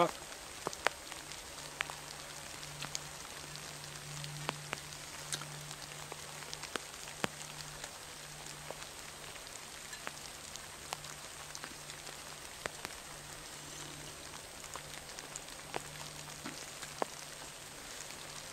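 Steady rain with many irregular sharp ticks, over a steady low hum.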